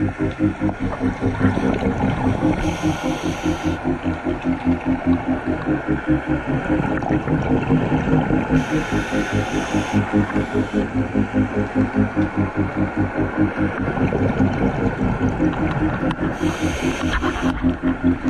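Underwater: a steady throbbing hum pulsing about four times a second, typical of a boat's engine and propeller carrying through the water. Three short hisses of a scuba regulator breath come roughly every seven seconds.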